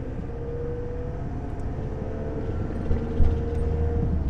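Campervan driving, heard from inside the cab: a steady low rumble of engine and tyres on the road, with a faint tone that rises slightly. A brief thump comes about three seconds in.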